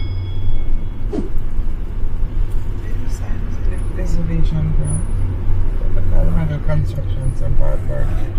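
A car driving, with a steady low engine and road rumble throughout.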